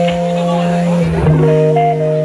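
Amplified blues harmonica playing long held chords, moving to a new chord about a second in.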